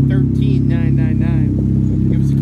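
2019 Can-Am Spyder's Rotax 1330 inline three-cylinder engine idling steadily at an even pitch, with a voice briefly over it about halfway through.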